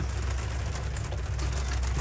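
Rain falling on a motorhome roof as an even hiss, over a steady low hum, with a couple of faint ticks.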